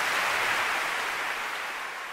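A soft rushing whoosh, a transition sound effect under the title card, that swells up and then slowly fades away.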